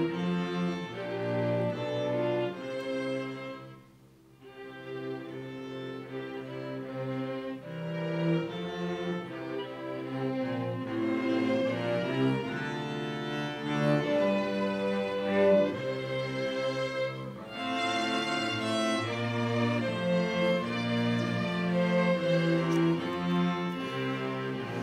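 A small string ensemble of violins, cellos and double bass plays a national anthem in slow, sustained chords. The music breaks off almost to silence for a moment about four seconds in, then continues.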